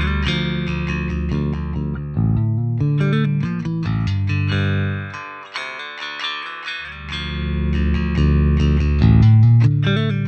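Electric bass guitar line played back through the Gallien-Krueger 800RB bass amp plugin, with sustained, full low notes. A little past halfway the low end drops out for about a second and a half, then the notes come back.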